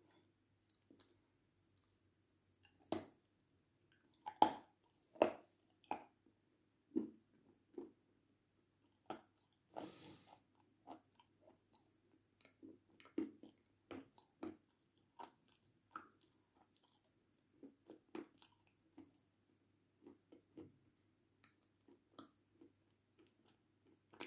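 A person biting and chewing dry edible clay close to the microphone: irregular crisp crunches and soft clicks, about one a second.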